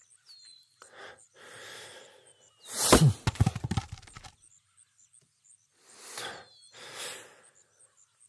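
A man breathing heavily, with a strained low grunt and a cluster of heavy thunks about three seconds in, over faint outdoor ambience.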